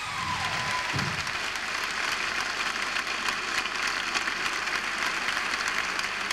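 Large theatre audience applauding steadily: dense, even clapping.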